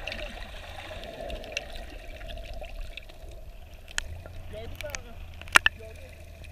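Underwater sound picked up through an action camera's waterproof housing: a steady, muffled water hum with scattered short clicks throughout and two sharper clicks near the end.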